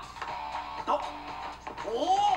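Anime soundtrack playing: background music with a held low note, and a brief bit of Japanese dialogue from the episode.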